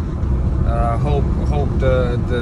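Steady low rumble of road and engine noise inside a moving car's cabin, under a man's talking voice.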